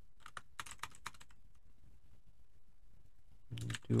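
Computer keyboard keys pressed in a quick run of clicks in the first second or so, then a pause.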